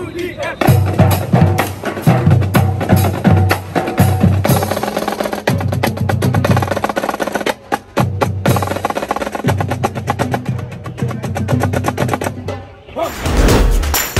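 Marching band drum line: snare drums playing a fast cadence with rolls over a repeating beat on low drums, starting about half a second in and stopping near the end.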